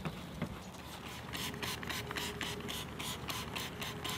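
A microfiber wash mitt rubbing over wet car paint: a quick run of short scratchy strokes, about six a second, starting a little over a second in.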